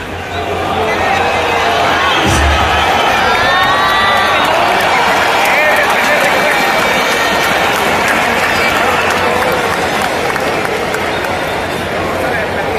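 Baseball stadium crowd cheering and shouting. It swells just after a short sharp crack at the start, likely the bat meeting the ball, and stays loud, with many voices yelling over one another. A dull thump comes about two seconds in.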